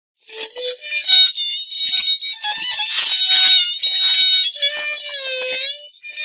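Opening music of a 1936 shellac gramophone recording of a qaseeda: a high melodic line in short phrases, with a held note bending down near the end. The sound is thin, with no bass.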